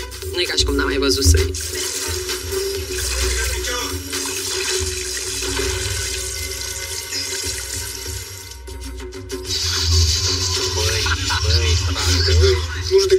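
Swimming-pool water splashing and rushing, over background music.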